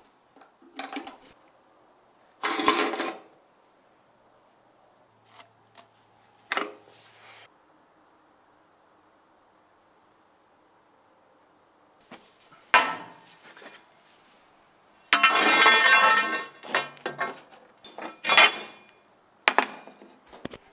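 Steel offcuts and hand tools clattering as they are picked up and set down on a workbench, in scattered bursts with quiet between. The longest and loudest is a ringing metal rattle of over a second, about three quarters of the way through.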